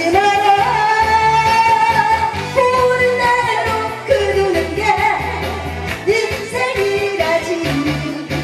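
A woman singing a Korean trot song into a microphone over upbeat backing music with a steady bass beat, holding long notes.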